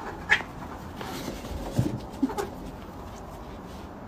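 A cat making a few short calls: one high and short, then two lower ones.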